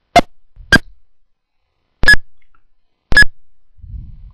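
Four short, sharp clicks, each with a brief ringing tone, spaced unevenly: two close together near the start, then two more about a second apart. They come from the computer being operated to finish the digitized shape.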